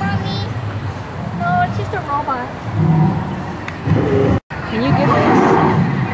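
Indistinct voices of people nearby over a steady outdoor hum, with no clear words. The sound cuts out completely for a moment about two-thirds of the way through.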